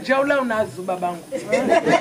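Only speech: a man talking into a handheld microphone.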